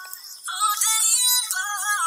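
Short high-pitched synthesized melody with no bass, a logo jingle of gliding, stepping notes; it dips briefly at the start and picks up again about half a second in.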